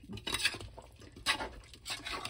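A perforated metal spoon stirring and scraping through chicken pieces in thick yogurt gravy in a pressure cooker, in a few wet scraping strokes.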